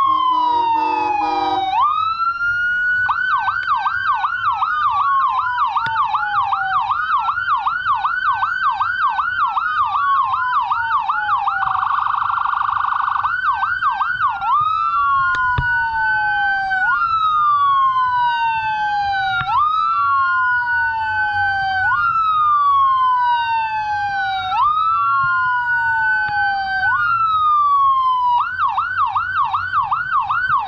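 Electronic emergency-vehicle siren cycling between a slow wail, each sweep falling over about two seconds and snapping back up, and a rapid yelp of several sweeps a second. There is a short horn blast near the start and another about twelve seconds in.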